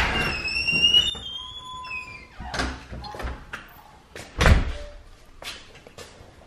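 A door being worked: a knock, then a high squeal that glides in pitch for about two seconds, a few lighter knocks, and a heavy thump a little past the middle as the door shuts.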